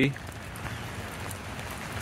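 Steady rain, an even hiss of rainfall.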